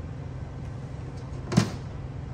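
A single sharp clunk about one and a half seconds in, over a steady low hum: a heavy engine part set down on the workbench.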